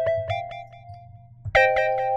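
Kilohearts ONE software synthesizer playing a preset: a chord re-struck in quick repeats, about four or five a second, stepping up in pitch and dying away. About a second and a half in, a new, brighter chord starts repeating and rings on.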